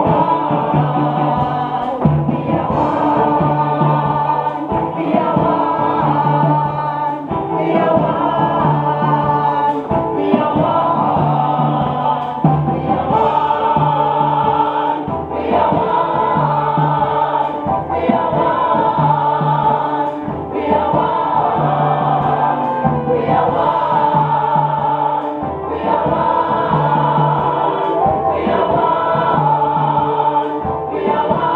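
A choir of voices singing in harmony over a low bass note that repeats in a steady rhythmic pattern.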